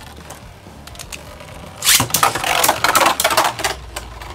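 Plastic Beyblade Burst spinning tops in a plastic stadium. At first one top spins with a faint hiss. About two seconds in, a loud, rapid rattling and scraping starts as a second top enters and the two clash, and it dies down near the end.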